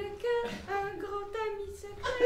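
A voice singing a wordless tune on repeated 'le' syllables without accompaniment: a run of short held notes, about five or six in two seconds, stepping between a few pitches.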